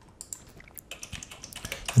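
Typing on a computer keyboard: a quick run of keystrokes entering a single word.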